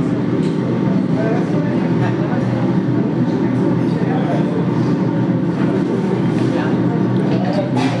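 Steady low hum of café room noise, with faint voices in the background.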